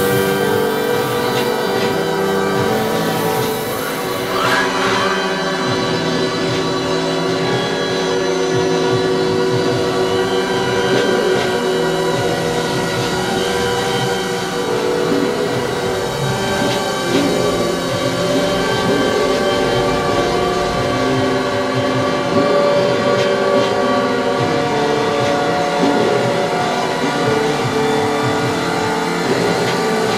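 Experimental electronic noise music: a dense, continuous drone of many layered sustained tones, with a brief wavering higher tone about four seconds in.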